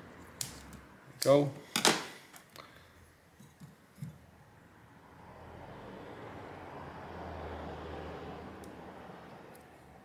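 Scissors snip through a soft thermal pad a couple of times near the start, followed by a few faint handling clicks. In the second half a soft hiss swells and fades; its source is unclear.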